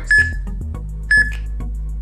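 Interval-timer countdown beeps, two short high beeps about a second apart, counting down to the start of an exercise interval, over background music with a steady beat.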